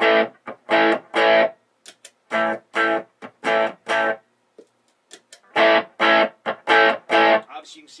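1993 PRS CE22 electric guitar played through a VVT X40 40-watt 6L6 tube head's clean channel with the mid boost on: about a dozen short, choppy chords in three bursts, each cut off sharply. The mid boost adds quite a bit of gain, pushing the clean channel to break up a little dirty.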